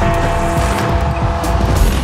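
Big Ben's hour bell tolling once for midnight: one struck bell note with a cluster of overtones that rings on for most of two seconds. It sounds over a dense bed of music and crowd noise.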